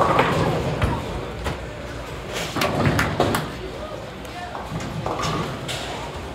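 Bowling alley din: scattered thuds and clatters of balls and pins from the lanes over a murmur of background voices, echoing in a large hall.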